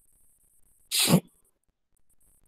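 A person sneezing once: a single short, sharp burst about a second in.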